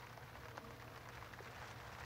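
Quiet background ambience: a faint, steady hiss with a low hum underneath and no distinct events.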